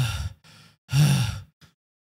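A man's voice giving two breathy "huff" exhales about a second apart, acting out heavy panting.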